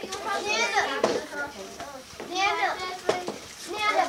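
Children's voices chattering and calling out over one another, with a couple of short clicks or rustles about three seconds in.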